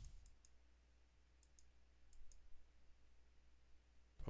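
Near silence with faint computer mouse clicks, three quick pairs of clicks about a second apart, while signing in to a website.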